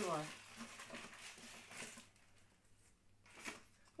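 Faint crinkling and rustling of product packaging being handled and opened, in short bursts, the clearest one about three and a half seconds in.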